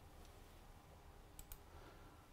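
Near silence: room tone, with two faint clicks at the computer close together about one and a half seconds in.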